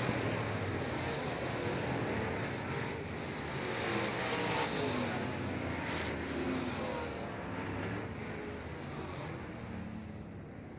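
Dirt-track Sportsman race cars running at speed past the flag stand at the finish, engine pitch rising and falling as cars go by, fading away over the last few seconds.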